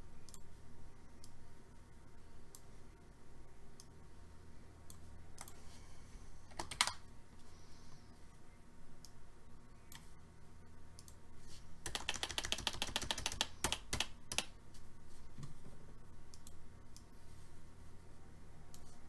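Computer keyboard typing and mouse clicks: scattered single clicks, then a quick burst of typing about twelve seconds in that lasts a second and a half.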